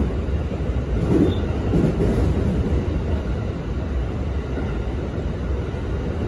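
JR West 225 series electric train running, heard from inside the passenger car: a steady low rumble.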